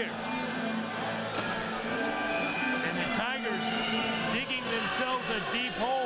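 Indistinct voices with music playing underneath.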